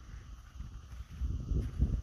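Wind buffeting the microphone: an uneven low rumble in gusts, stronger from about a second in.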